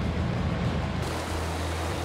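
A fishing boat's engine running under way, a steady low drone, with water rushing along the hull; the rushing hiss grows brighter about a second in.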